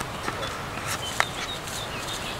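Birds chirping in short high notes over a steady outdoor background hiss, with one sharp click about a second in.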